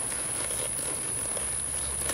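Steady outdoor background noise with a constant high-pitched whine running under it; no distinct hoofbeats stand out.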